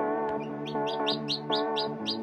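Background music with steady sustained notes. From about a second in, newly hatched chicks peep rapidly over it, about five short high peeps a second.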